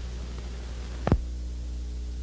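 Steady low electrical hum with faint hiss on an old soundtrack, broken by a single sharp click about a second in.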